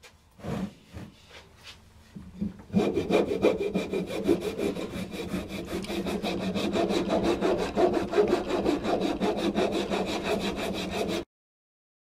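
A few knocks as the wooden decoy body is handled, then, from about three seconds in, a flat hand rasp scraping rapidly back and forth across the wood to shape the body. It stops abruptly near the end.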